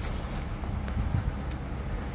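Steady low hum and rumble of outdoor background noise, with wind on the microphone and a few faint clicks.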